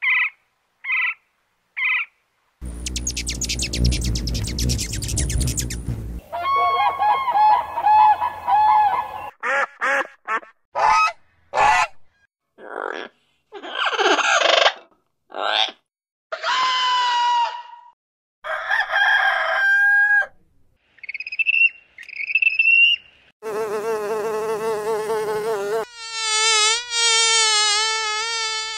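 A quick run of cartoon animal sound effects, one short call after another with gaps between: bird squawks and cries, a rapid run of sharp taps, and insect buzzing, the last a wavering buzz near the end.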